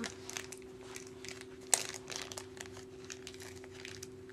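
Crinkling and rustling of small plastic packaging being handled, with one sharp click a little under two seconds in, over a steady low hum.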